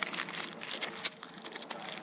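Plastic cheese-cracker wrapper crinkling in the hand, a run of irregular small crackles.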